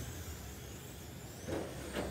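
Electric RC touring cars racing on an indoor carpet track: a steady mix of small-motor whine and tyre noise, with a brief louder swell about one and a half seconds in as a car passes close.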